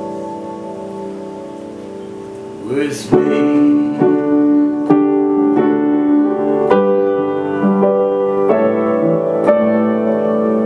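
Upright piano: a held chord dies away, then after about three seconds, just after a short sliding voice-like sound and a knock, chords start again, struck about once a second.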